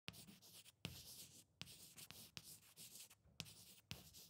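Faint chalk writing on a blackboard: about six strokes, each starting with a sharp tap and running on as a scratchy hiss.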